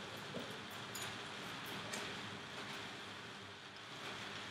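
Quiet room tone: a steady faint hiss, with a couple of faint ticks.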